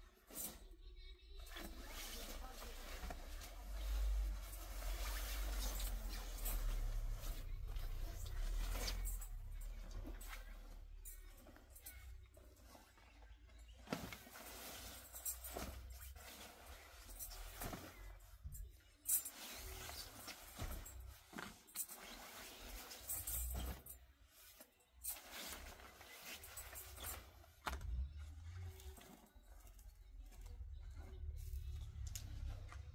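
Clothing rustling and shuffling as jackets are pulled from a pile and handled, in irregular bursts with a low rumble underneath.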